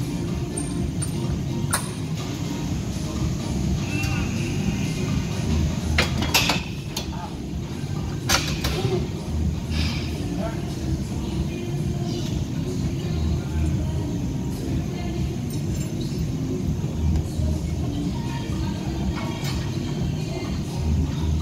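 Gym room sound with music playing over a steady low rumble, broken by a few sharp metallic clanks from weight-training equipment, the loudest around six and eight seconds in.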